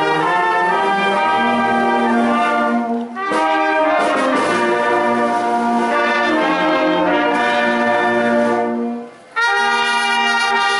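Brass band playing a slow piece in long held chords, with a brief break about three seconds in and a half-second pause near the end.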